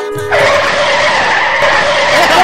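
A held music note, cut off about a third of a second in by a sudden loud, steady screech of vehicle tyres skidding.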